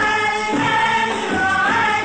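A choir singing an Arabic devotional song in praise of the Prophet Muhammad, with musical accompaniment and long held notes.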